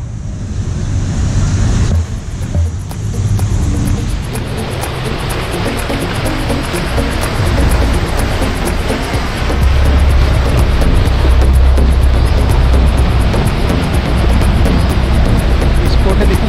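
Canal passenger boat passing close alongside the pier: engine running and water churning and splashing in its wake, with a heavy low rumble loudest about ten seconds in.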